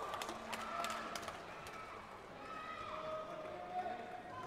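Sports hall ambience: distant voices and chatter carrying in a large hall, with scattered sharp taps in the first second or so.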